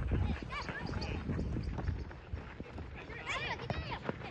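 Children's voices calling out on a soccer pitch: short high-pitched shouts about half a second in and again past three seconds, over a low outdoor rumble.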